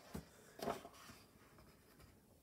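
A large page of a hardcover book being turned by hand: a short rustle of paper, then a louder, longer swish as the page comes over and lands, a little over half a second in.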